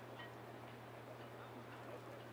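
Faint open-air ambience at a soccer field: a steady low hum under a light hiss, with a few weak, indistinct sounds that may be distant players' voices.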